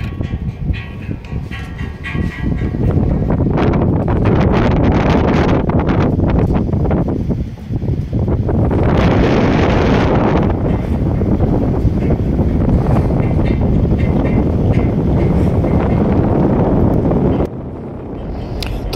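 Wind buffeting the phone's microphone: a steady, loud low rushing, with a brighter hiss swelling for about two seconds around nine seconds in.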